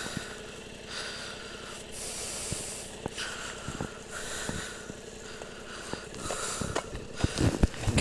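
A series of rasping pulls, about one a second, as a loose strap on a motorcycle's luggage pack is tugged tight, over a steady low rumble.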